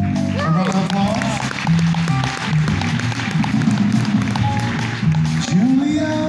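A jazz combo of piano, upright bass and drums plays steadily, the bass moving note by note, while the audience applauds.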